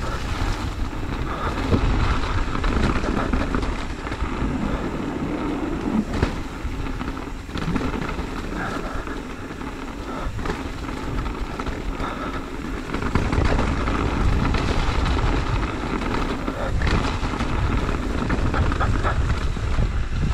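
Wind rushing over the microphone of a mountain-bike rider's camera, with the bike's tyres rolling over a dirt trail. A few knocks come as it hits bumps.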